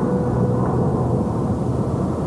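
Jeep Wrangler engine running steadily as the vehicle drives along, a low drone with a few held tones.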